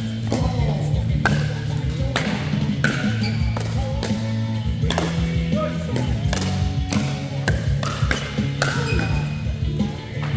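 Pickleball paddles hitting a plastic ball in a rally, sharp pops about once a second, some with a short hollow ring, over steady background music.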